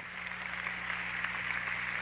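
Large audience applauding, an even patter that grows slightly louder, over a low steady electrical hum.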